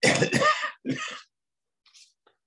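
An elderly man coughing: three hard coughs, two in quick succession and a third about a second in, followed by faint breathing.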